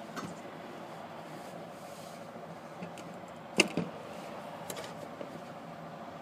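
Faint steady background hum, broken by one sharp click about three and a half seconds in and a softer click just after it.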